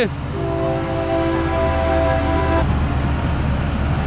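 A horn sounding one steady chord of several tones for about two seconds, starting just after the start and stopping about two and a half seconds in, over a steady low rumble.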